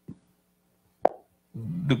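A single sharp click close to a microphone about a second in, during a pause in a man's talk; his speech resumes shortly after.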